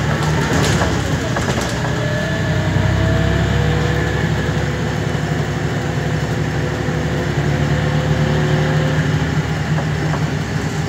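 Volvo B10BLE city bus heard from inside the passenger cabin while driving: a steady diesel engine drone with a faint whine that slowly rises in pitch, and a few clicks and rattles in the first couple of seconds.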